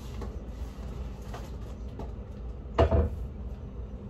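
Items being handled on a kitchen counter: a few light knocks, then one louder thump a little before three seconds in, over a low steady hum.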